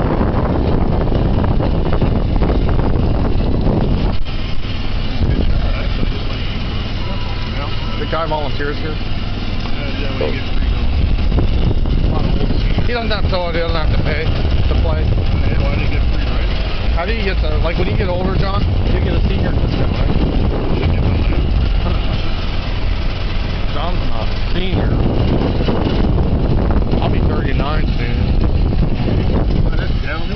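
Golf cart driving across the course: a steady low rumble of the cart running and rolling over the grass.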